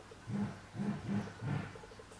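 A man's low voice making three short hummed hesitation sounds, like "mm" or "um".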